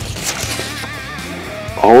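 Background music with guitar playing quietly, and a single short click right at the start.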